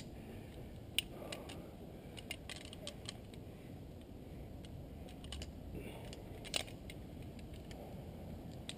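Scattered metallic clicks and clinks of climbing hardware, a foot ascender and carabiners, being handled while the foot ascender is taken off the rope. The sharpest click comes about a second in.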